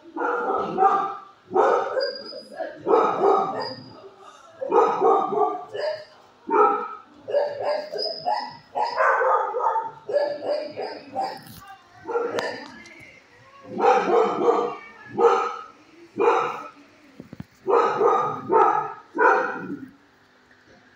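Shelter dogs barking repeatedly, a ragged run of barks roughly once a second with short gaps between them.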